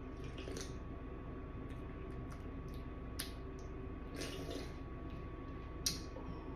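Someone drinking fizzy soda from a can: quiet sips and swallows with small wet clicks, a short hiss about four seconds in, and a sharper click near the end.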